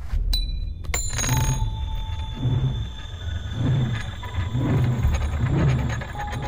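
A metal coin pings twice with sharp metallic clicks, leaving a high ring that lingers for several seconds. Music with a deep pulse about once a second runs under it.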